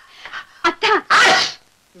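A man's loud sneeze: two short voiced build-ups, then the sneeze itself about a second in.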